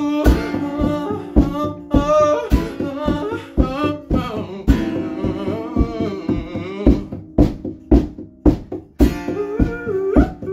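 A song performed on a strummed acoustic guitar with sharp, regular percussive hits, and a voice singing over it for about the first seven seconds before the guitar carries on alone.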